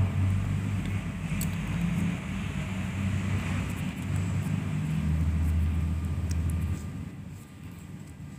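A low, steady rumble with a few faint ticks over it, fading out about seven seconds in.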